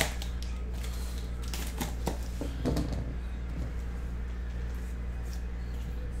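A cardboard shipping case of trading-card boxes being opened by hand: a few short scratches and light knocks of cardboard and wrap, mostly in the first three seconds, over a steady low background hum.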